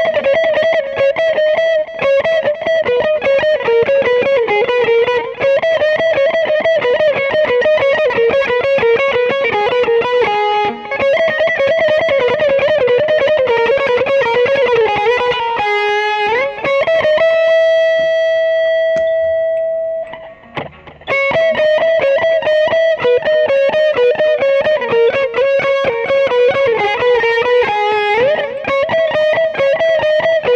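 Distorted electric guitar playing fast neoclassical runs, the same lick repeated. A little over halfway through, a slide up lands on a note held for about three seconds, then the fast runs start again; another slide up comes near the end.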